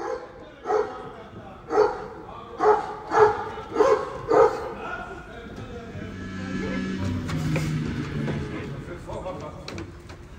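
A dog barking, about six loud barks a little over half a second apart, followed by low held notes of music.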